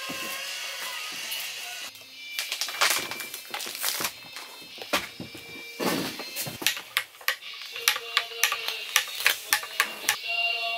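Background music, then from about two seconds in a metal spoon tapping and clinking against mugs while hot chocolate is made. A quick run of sharp clinks comes in the last few seconds as the spoon stirs a mug.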